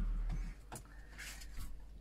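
The low bass of background music ends about half a second in, leaving quiet room sound with a few faint clicks.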